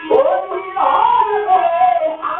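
Rajasthani folk song: a male singer's long note that slides up at the start and is then held with a slight waver, over string and percussion accompaniment.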